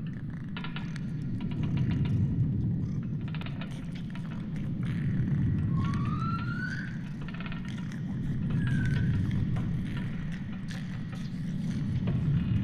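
Sound-designed alien forest ambience: a deep rumble that swells and eases about every three seconds, with scattered clicks and ticks. A rising call sounds about six seconds in, and a shorter one near nine seconds.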